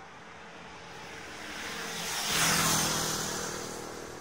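A vehicle passing close by: its noise builds for about a second and a half, peaks about two and a half seconds in with a low hum, then fades away.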